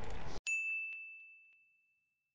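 Road and wind noise cut off abruptly, followed by a single bright bell-like ding that rings on one clear note and fades out over about a second.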